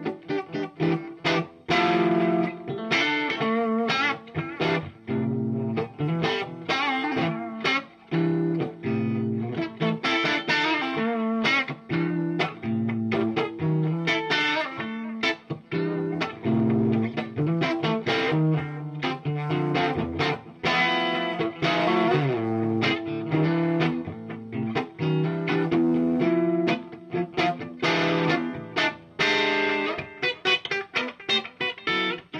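Electric guitar played through a Bogner Mephisto 1x12 combo amplifier with an Electro-Harmonix Memory Man delay, a continuous busy stream of picked notes and chords.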